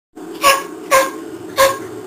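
Italian greyhound barking three times in quick succession, short sharp barks, over a steady low hum.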